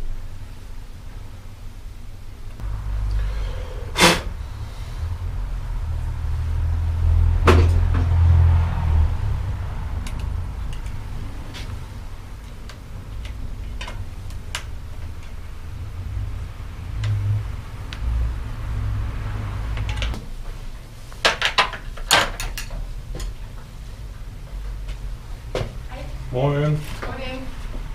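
Sharp clicks and metal knocks of a hand tool and bicycle parts while a Shimano XT rear derailleur is fitted to a bike in a workstand, a few scattered ones and a quick cluster near the end, over a low rumble.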